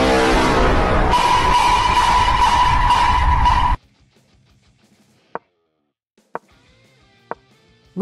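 Loud, bass-heavy, distorted troll-face meme sting: music with a laugh at the start, joined about a second in by a steady high tone. It cuts off suddenly near four seconds, and after that only three faint ticks are heard.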